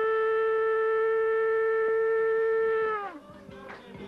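A long Andean cane trumpet blown in one loud, steady held note that sags slightly in pitch and stops about three seconds in. Quieter, mixed sounds follow in the last second.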